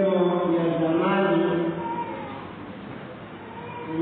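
A man's voice chanting in long held notes. The phrase ends a little under two seconds in and trails off, and a new chanted phrase begins right at the end.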